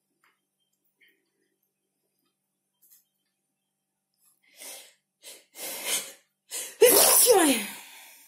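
A person sneezing: a few short, sharp breaths build up over about two seconds, then one loud sneeze with a falling voice near the end.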